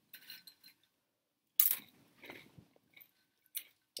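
Crunchy veggie straws being bitten and chewed, with irregular crackling crunches; the loudest is a sharp crunch about a second and a half in.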